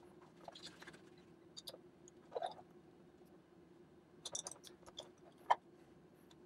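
Utility knife blade scraping and cutting into the thick plastic housing of a refrigerator water filter: a faint series of short scrapes and clicks, with a sharper click near the end.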